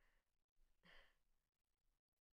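Near silence, with one faint short breath from the woman about a second in.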